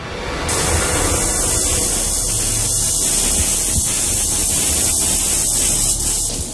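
A 750,000-volt Tesla coil firing, its high-voltage arcs striking a car's metal roof. It makes a loud, steady hissing buzz over a low hum with a few sharp cracks, starting about half a second in.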